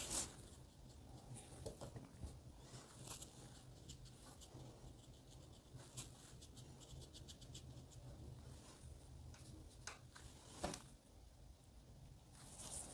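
Near silence: faint rustle and light ticks of a damp paintbrush worked over watercolour paper, softening the edges of the paint, over a low steady hum, with a slightly louder knock near the end.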